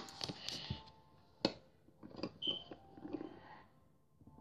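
Faint clicks and taps of small plastic toy figures being handled and set down, a few scattered knocks with quiet rustling between.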